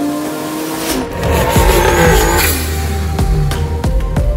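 Toyota Hilux's swapped-in 2JZ-GTE turbocharged straight-six driving by, its sound rising sharply and loudly about a second in, over background music.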